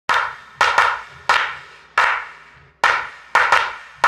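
Sharp, knock-like percussive hits, eight in four seconds at uneven spacing, each dying away over about half a second.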